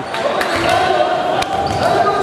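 A basketball bouncing a few times on a hardwood gym floor, each bounce a sharp knock, with voices carrying in the echoing hall.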